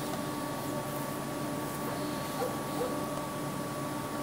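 Steady background hiss with a faint steady hum, and a distant bird giving two short low calls a little after halfway.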